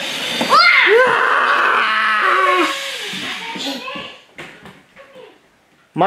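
A child's excited cry of "Wow!" followed by squealing and shrieking voices for a few seconds, which trail off into brief bits of voice and fade out after about four seconds.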